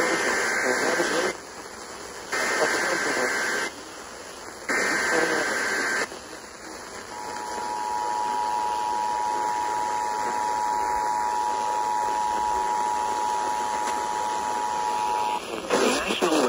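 Emergency Alert System activation heard through a portable FM radio's speaker. Three SAME header data bursts come first, each a harsh digital buzz about a second long with short gaps between. Then the EAS two-tone attention signal holds steady for about eight seconds, announcing a severe thunderstorm warning.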